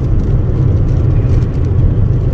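A car driving, heard from inside the cabin: a steady low rumble of engine and tyre noise.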